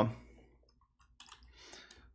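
Faint computer keyboard typing: a few scattered keystroke clicks in the second half, as a web address is typed into a browser.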